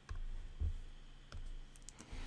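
A few faint, scattered clicks and light taps from a computer being used to open the pen-colour menu on a digital whiteboard.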